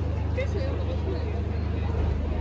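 Steady low rumble of an idling engine, with a crowd talking around it.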